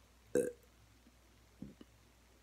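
A girl's single short burp about half a second in, followed by two faint little mouth sounds near the end.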